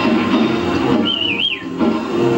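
Live jazz band playing with electric guitar, bass and drums. About halfway through, a single high, wavering whistle-like note warbles and slides down and away as the band briefly drops out.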